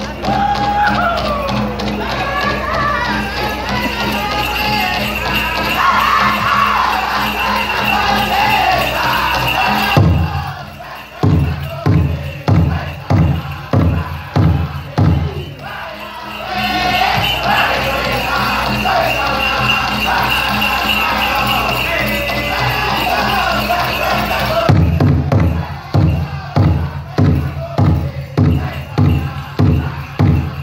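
Powwow drum group singing a men's fancy dance song in high voices over a shared big drum. The drumming runs fast and dense, then breaks twice into separate, evenly spaced heavy strokes, about ten seconds in and again near the end.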